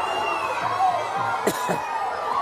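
Crowd of spectators, with children's voices among them, cheering and shouting, greeting a point that levels the score. A single sharp crack cuts through about one and a half seconds in.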